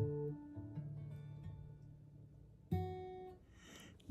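Quiet acoustic guitar: held notes fade out, a low note comes in just under a second in, and a single chord is plucked near three seconds in and dies away within about half a second.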